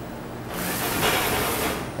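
GMI Laser III FX bridge laser head travelling along its overhead gantry to its home position: a rushing hiss that swells about half a second in and cuts off sharply just before the end.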